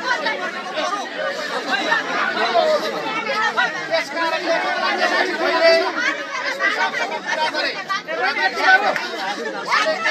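Speech: a man talks loudly to a crowd, with other voices chattering over and around him.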